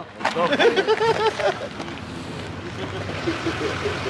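Indistinct men's voices talking, clearest in the first second or so, over a steady background noise.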